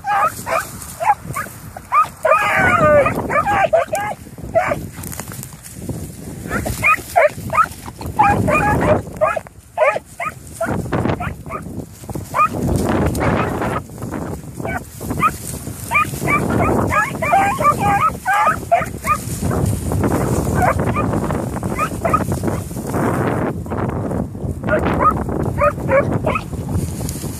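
Beagles giving tongue on a scent trail: repeated bursts of high barking and bawling, a few dogs' voices overlapping, with brief lulls. Strong wind buffets the microphone throughout.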